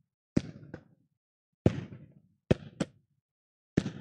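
A ball bouncing on a wooden gym floor and struck underhand with two open hands in a back-and-forth rally: about six sharp thuds at uneven spacing, each ringing briefly in the large hall.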